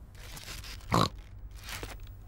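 Cartoon pig character snorting: one snort about a second in and a smaller one near the end.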